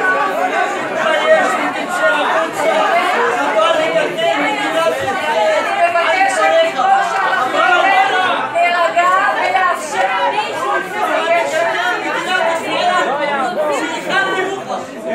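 Many voices talking over one another in a large hall, a loud and unbroken hubbub of overlapping speech with no single speaker standing out.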